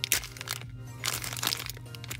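Crinkling and crackling of a foil blind-bag packet being torn open and worked by hand, in a few short bursts, with faint background music underneath.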